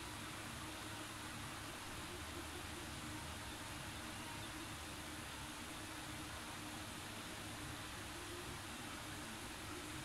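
Faint steady hiss with a low hum underneath, unchanging throughout: background room tone, with no distinct sounds.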